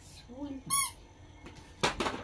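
A toddler's short, high-pitched squeal just under a second in, after a softer little vocal sound, then a single knock near the end.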